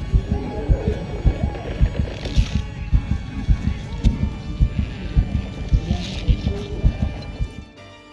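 Tense film-score music: a steady low bass pulse of about two beats a second, which cuts off suddenly just before the end.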